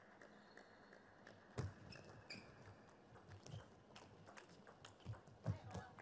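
Table tennis ball clicking back and forth off the bats and table in a rally, starting with the serve about one and a half seconds in.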